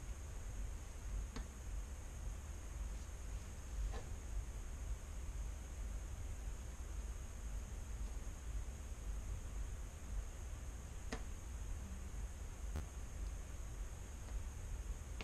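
Quiet workbench room tone: a low hum and a steady high whine, with four faint clicks of soldering tools against the circuit board.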